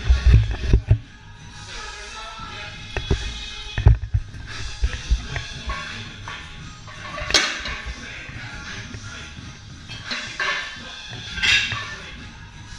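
Background music playing through the gym, with heavy muffled thumps in the first second and again about four seconds in, and two sharp knocks, one about seven seconds in and one near the end.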